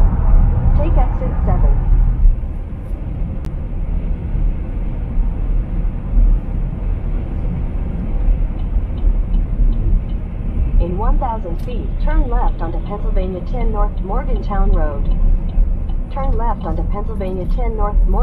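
Steady low road and engine rumble inside a car at highway speed, with a voice talking over it now and then, most from about eleven seconds in.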